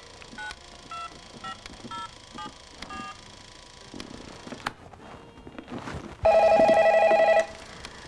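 Touch-tone telephone dialling: about seven short keypad beeps, half a second apart. A few seconds later a desk telephone rings once with a warbling electronic ring lasting about a second.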